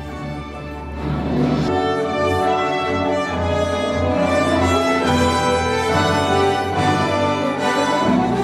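An orchestra playing sustained, lyrical music with prominent strings, swelling louder about a second in and holding full.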